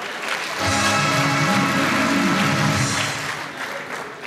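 Audience applause in a theatre, with a short burst of recorded music coming in about half a second in and fading out near the end.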